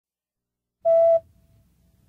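A single short electronic beep, a steady mid-pitched tone lasting about a third of a second, starting about a second in. A faint low hum follows it.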